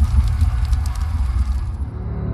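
Fire sound effect: a rush of hissing noise with sharp crackles over a low, deep drone. The hiss dies away near the end.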